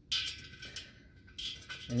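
Metal-on-metal scrape and clink of a screw being handled and threaded by hand onto the stainless steel hopper base, with a faint ringing. A second short scrape comes near the end.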